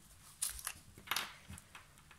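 Faint paper rustling and light scuffs as card stock and craft supplies are handled on a desk: a handful of brief sounds spread through the two seconds.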